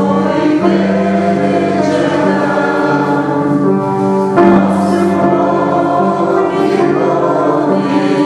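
Choral music: a choir singing with long held notes.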